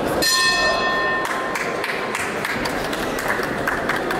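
Boxing ring bell sounding once, a steady ring lasting about a second, marking the end of the round, over steady arena crowd noise.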